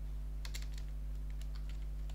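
Computer keyboard typing: a few scattered keystrokes, over a steady low hum.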